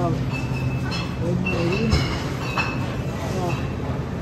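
Shopping cart rolling along, one of its wheels giving a thin squeal that comes and goes.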